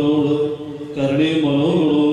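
Liturgical chanting of the West Syriac rite: a melody of long, held notes that breaks off briefly about half a second in and resumes a second later.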